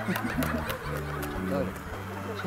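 Studio audience chuckling and laughing softly, with band music playing underneath.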